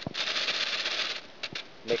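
A clear plastic bag crinkling as a hand grips and handles it: a click, then about a second of steady crinkling, with two short clicks after it.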